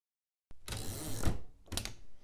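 Carriage of an Underwood Standard manual typewriter being pushed back: a rattling slide of under a second ending in a sharp knock, then a short clack near the end.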